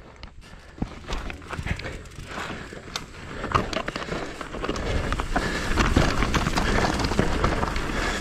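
Mountain bike descending a rough trail at speed: tyres on dirt and rock, the bike rattling, a low rumble of wind and ground noise building up as the pace rises.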